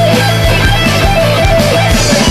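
A hard rock song: electric guitars over bass, with drums keeping a steady beat.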